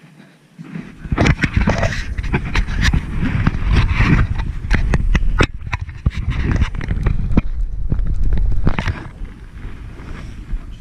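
Plastic sled sliding fast downhill over snow: a loud scraping rush broken by many sharp knocks and bumps. It starts about a second in and eases off near the end.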